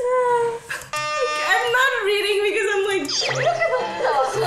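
Young women's voices from a Korean variety show, talking excitedly. One drawn-out exclamation comes at the start, and a short, steady electronic sound effect sounds about a second in.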